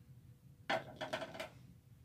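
Heat tape being pulled and pressed onto a sublimation mug. It makes a brief noisy peel of under a second, starting a little past the middle.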